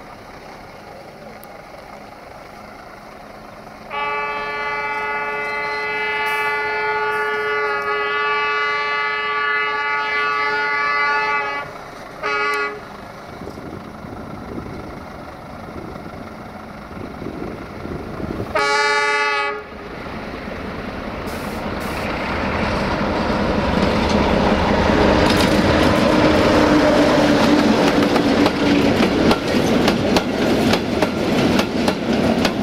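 Electroputere 060-DA (LDE2100) diesel-electric locomotive sounding its horn: one long blast of about eight seconds, a short blast, then another about a second long. After that the rumble of its diesel engine and the freight wagons' wheels grows steadily louder as the train draws near.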